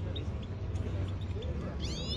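Caged Himalayan goldfinches calling: a few short high notes in the first half second, then a rising, slurred call near the end.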